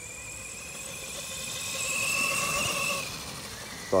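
FTX Outlaw RC monster truck's electric motor and drivetrain whining as it drives over grass. The whine rises a little in pitch and loudness, then falls away about three seconds in.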